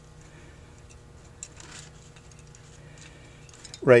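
Faint handling of a carburetor float and a small measuring scale during a float-level check: a few soft ticks over a low steady hum.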